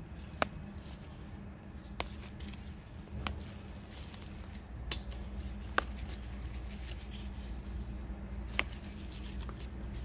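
Hands picking tender island aster shoots: a handful of short, sharp snaps of stems breaking off, spaced one to three seconds apart, with light leaf rustling over a faint low hum.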